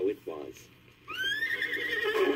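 Horse whinnying, the page-turn signal of a read-along book and record. It starts about a second in, rising and then wavering as it is held.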